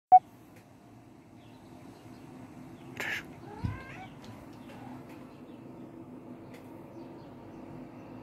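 A sharp click at the very start, then brief animal calls: a short harsh call about three seconds in, followed by a quick rising chirp, over a faint steady hum.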